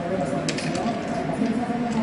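Men's voices talking over one another, with sharp clicks of backgammon checkers and dice on a wooden board, the loudest about half a second in.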